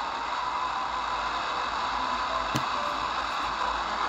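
Degen DE1103 shortwave receiver on 5960 kHz AM putting out a steady hiss with a faint whistle-like tone and a brief click about two and a half seconds in. The noise is the mishmash of overloading FM signals, FM breakthrough from the Tecsun AN-48X active loop antenna swamping shortwave reception.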